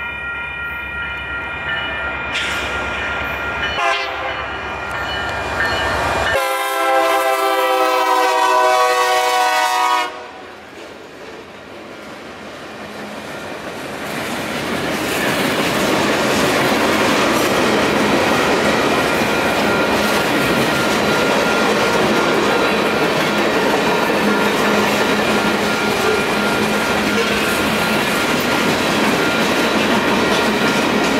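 Freight locomotive horn sounding for the grade crossing in several blasts, the last one long and cutting off about ten seconds in. Then the freight cars roll steadily through the crossing with wheel rumble and clickety-clack over the rail joints, while the crossing's electronic warning bell keeps ringing.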